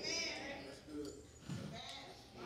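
The echo of a preacher's loud line dying away in a big room, then faint scattered voices from the congregation calling out responses.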